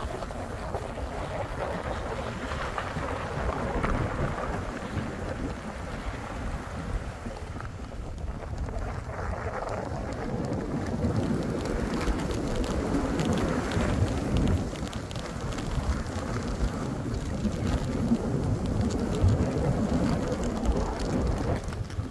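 Skis sliding and hissing over soft fresh snow, with wind rumbling on the microphone, a little louder in the second half.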